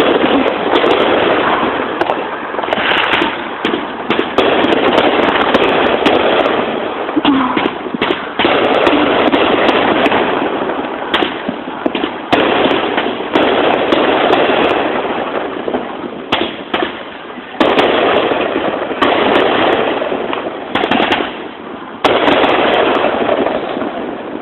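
Fireworks going off: a dense, continuous run of bangs and crackling, loud throughout, with many sharp cracks standing out.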